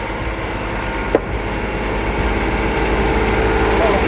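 A boat's engine running steadily, heard as a low hum inside the cabin of a sailing catamaran under way, with one sharp click about a second in.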